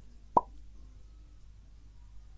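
A single short, pitched plop about a third of a second in, over a faint low background hum.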